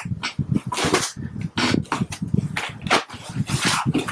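Black foam packing sheets being handled and lifted out of a cardboard box: a dense run of irregular rubbing and scraping of foam against foam and cardboard.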